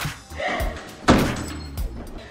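A door slams shut once, sharply, about a second in, over background music.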